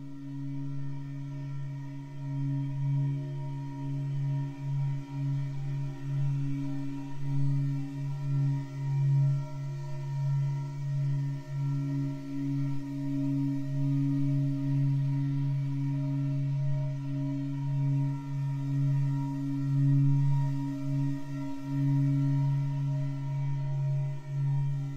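A low, steady meditation-frequency drone: a deep hum with a strong tone an octave above and fainter higher tones, its loudness swelling and dipping unevenly. It is spatially processed as 8D audio for headphones.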